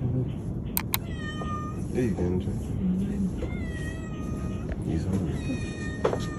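A domestic cat meowing: about three drawn-out meows, each bending up and down in pitch.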